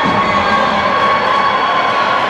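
Steady mechanical hum with a held high tone under a loud, even noise, with no sudden sounds.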